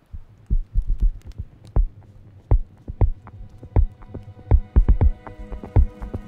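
Footfalls of a runner thudding at an uneven pace, about two to three a second. A held musical chord swells in underneath from about halfway.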